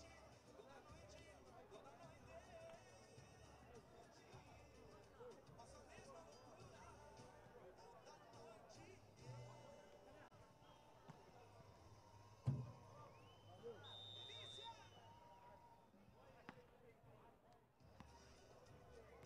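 Near silence with faint distant voices and music, broken once about twelve seconds in by a single sharp thump of a footvolley ball being struck.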